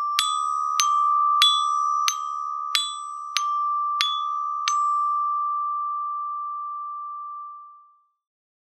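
Percussion bell set (glockenspiel bars) struck with mallets: steady quarter notes alternating D and E-flat about 0.6 s apart, then a final D that rings on and fades away over about three seconds.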